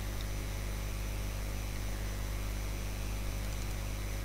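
Steady electrical mains hum with hiss, the background noise of the narrator's recording setup.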